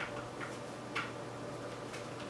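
Small plastic clicks of GoPro mount and extender parts being fitted and screwed together on a helmet mount: about four faint ticks spread over two seconds, the one about a second in the loudest.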